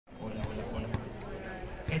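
Low murmur of voices with two sharp knocks about half a second apart; right at the end a man starts speaking through a microphone and loudspeaker.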